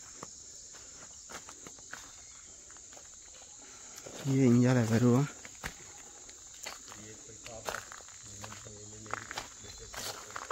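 Insects droning steadily at a high pitch, with light footsteps over loose brick rubble. A man's voice cuts in briefly about four seconds in and again, fainter, near the end.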